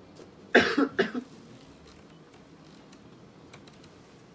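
A single cough in two quick bursts about half a second in, as loud as the surrounding speech, followed by quiet with a few faint ticks.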